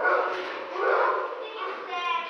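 A dog breathing and snuffling close to the microphone while its chin is scratched, with a brief high whine near the end.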